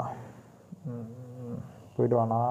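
A man's voice making one short, level, drawn-out hum or vowel about a second in, with a faint click just before it.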